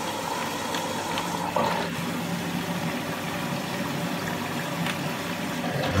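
Beko WMB81221LS washing machine in test mode, water running through it with a steady hum that shifts to a lower pitch about a second and a half in. Only the water stages run; the drum does not turn because its motor has failed.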